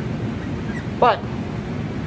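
Steady fan noise from a laminar flow hood blowing through its HEPA filter panel, an even whoosh with a low hum, broken once by a short spoken word about a second in.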